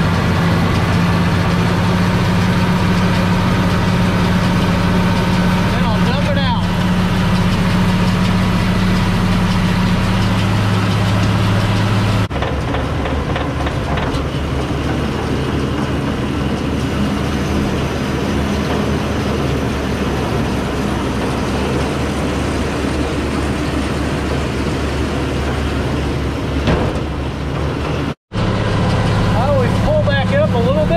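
International 1086 tractor's six-cylinder diesel running steadily under load, powering a New Idea 486 round baler. About twelve seconds in, the sound changes abruptly to the baler working from outside the cab, with a noise that sounds like a bad bearing, though the owner has checked the bearings and found them all good.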